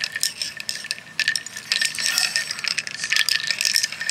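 Coffee poured over ice cubes and milk in a ceramic mug: the ice cubes clink, tick and crackle rapidly as the stream hits them, with a short lull a little after a second in.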